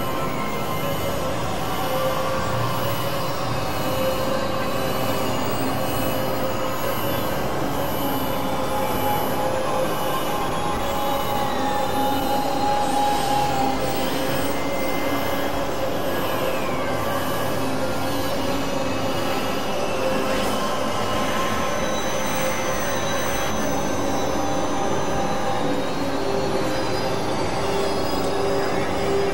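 Dense experimental mix of several music tracks playing at once: layered sustained drones and high steady tones at a steady level, with a few falling pitch slides.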